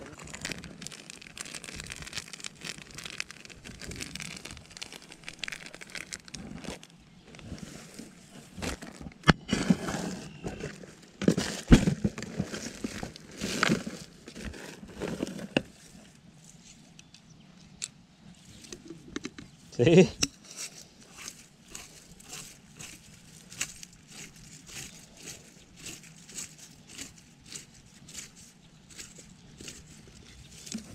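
Paper bag crinkling and rustling as hands dig into it, with a few sharp knocks, over faint background voices. In the second half, a wooden stick stirs and taps in a bowl of dry cornmeal carp bait in a run of regular short taps.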